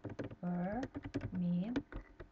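Typing on a computer keyboard: a quick, uneven run of key clicks as a line of text is entered.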